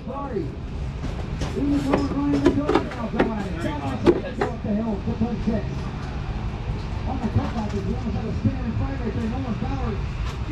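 People talking in the background, with a few sharp knocks and clinks in the first half, over a steady low rumble.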